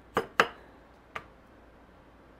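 Large kitchen knife cutting through a peeled raw potato and knocking on a wooden cutting board: two sharp knocks close together, then a fainter one about a second later.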